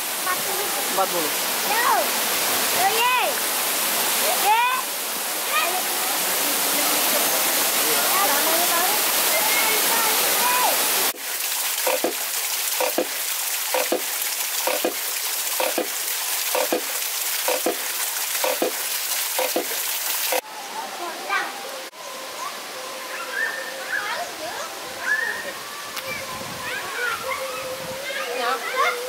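Waterfall rushing and splashing for about the first ten seconds, with voices over it. Then a small bamboo water wheel turning under a spout of water, with an even knocking a little under twice a second. Near the end, softer running water under talk.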